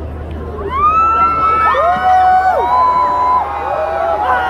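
A large crowd of fans screaming and cheering. Many high-pitched voices shoot up together about half a second in and hold, over a low murmur, then ease off slightly near the end.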